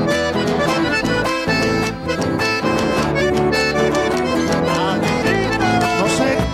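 Instrumental passage of a chacarera, an Argentine folk dance tune: acoustic guitars strummed in a steady rhythm with a held melody line above them.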